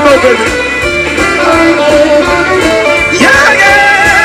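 A live electric blues band plays, with electric guitar over bass and drums. A pitched line slides upward about three seconds in.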